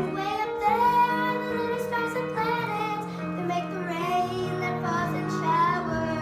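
A child singing a show tune over sustained instrumental accompaniment.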